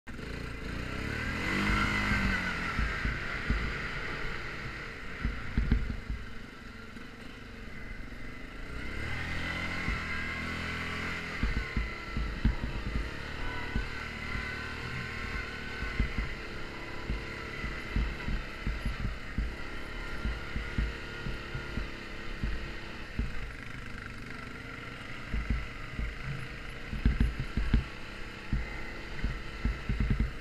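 Yamaha Grizzly ATV's single-cylinder four-stroke engine running while riding, its pitch rising and falling with the throttle, clearly around two seconds in and again around ten seconds in. Frequent low thumps from the rough, snowy trail run underneath.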